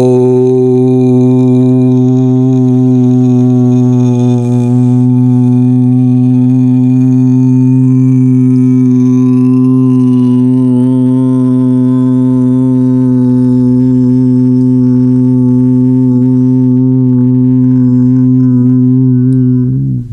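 A man's voice holding one long, steady 'Om' as a closed-lip hum at a single low pitch. It cuts off just before the end.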